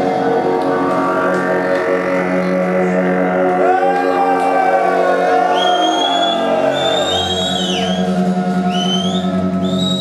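Live psychedelic rock band playing a spacey, droning passage: layered held tones over a steady low drone. From about four seconds in, high tones slide and swoop up and down in pitch.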